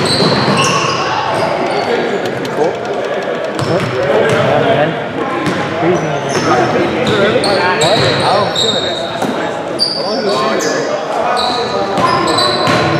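Basketball being dribbled and sneakers squeaking on a hardwood gym floor during a game, with short high squeaks scattered throughout and indistinct voices of players in a large gym.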